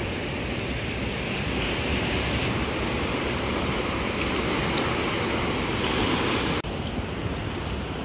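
Ocean surf and rushing water at a river mouth during a strong high tide, with wind on the microphone, a steady wash of noise. About two-thirds of the way in it drops suddenly to a quieter, duller wash.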